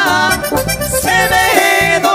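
Live tierra caliente-style band music from keyboard, bass guitar, guitar and drums, with a lead melody holding one note near the end.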